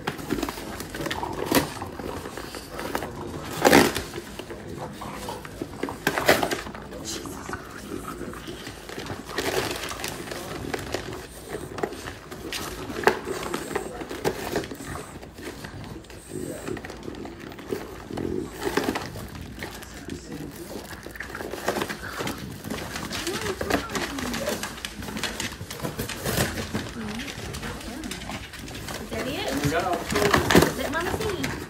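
French bulldogs tearing and chewing a cardboard box, the cardboard ripping and crackling in irregular bursts, with loud rips about 4 and 6 seconds in.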